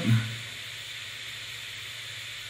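Steady background hiss with a faint low hum, the recording's own noise floor, under quiet handling of the microphone and shock mount. The end of a spoken word is heard at the very start.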